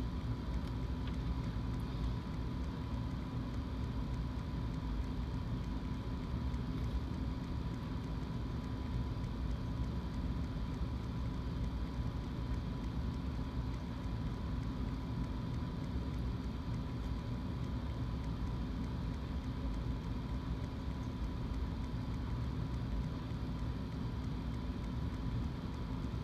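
Steady low hum with background hiss and a faint steady high tone, unchanging throughout; no distinct handling sounds stand out.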